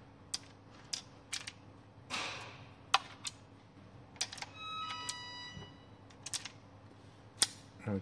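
Umarex Colt Peacemaker .177 CO2 revolver being loaded by hand: the half-cocked cylinder is turned and pellet shells are pushed into its chambers, giving a run of separate metallic clicks. The sharpest clicks come about three seconds in and near the end, and a short ringing tone sounds about five seconds in.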